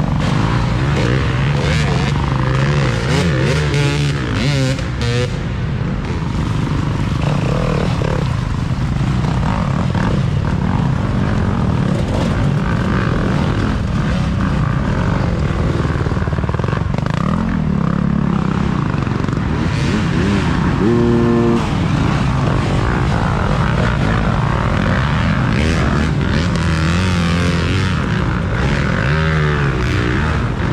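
Dirt bike engines passing one after another, their pitch rising and falling as the riders throttle on and off.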